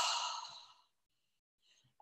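A woman's long, breathy exhale through the mouth, a deliberate deep-breathing out that fades away about a second in.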